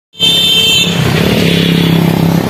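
Motor scooter engine running steadily as it rides past, with a high steady tone over it for about the first second.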